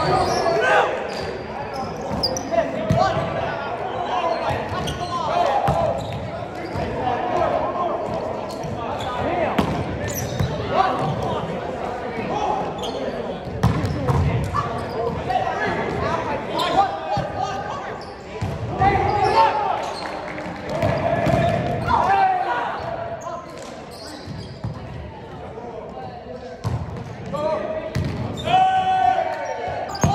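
Indoor volleyball rally in a large gym: players' voices calling and shouting over one another, with repeated sharp thumps of the ball being struck and hitting the floor.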